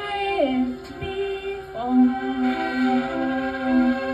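Live ambient music: bowed violin and held drone-like notes. A pair of notes slides down about half a second in, new sustained notes enter near the middle, and a lower note pulses about three times a second in the second half.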